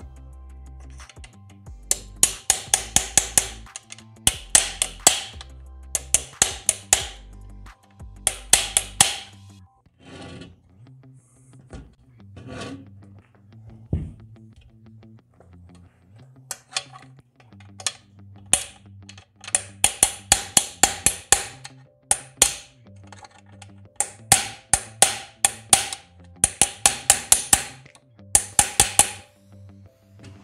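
Small hammer tapping at the corner of an aluminium door frame, knocking the corner cleat and angle piece into place to lock the mitred joint. The blows come in quick bursts of several taps with short pauses, and a quieter stretch in the middle.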